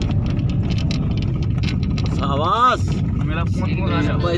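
Steady low rumble of a moving vehicle and wind, heard from on board. About two and a half seconds in, a voice briefly rises and falls over it.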